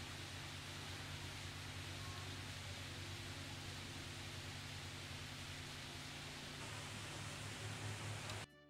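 Steady outdoor background noise: an even hiss over a low, constant hum, with no distinct event.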